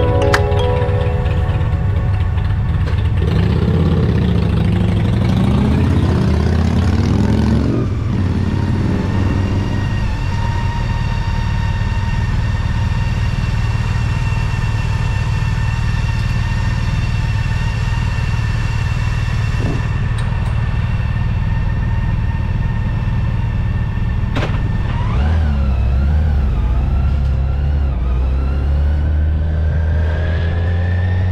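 Large touring motorcycle's engine idling steadily while stopped. A short click comes about 24 seconds in, then the engine revs up as the bike pulls away near the end.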